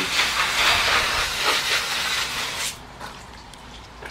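Water spraying from a pistol-grip garden hose nozzle, a steady hiss that stops about two-thirds of the way in.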